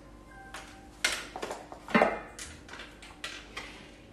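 Steel boom of a pickup truck crane swung by hand on its mast: a faint squeak, then a knock about a second in and a louder metal clank about two seconds in, with lighter clicks and rattles after.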